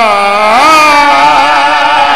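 A man singing one long, drawn-out melodic phrase in a chant-like style: the pitch steps up about half a second in and is then held with a slow waver.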